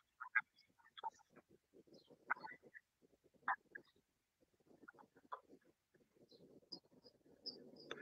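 Near silence on a video call: only faint, scattered short chirps and clicks, with no clear speech.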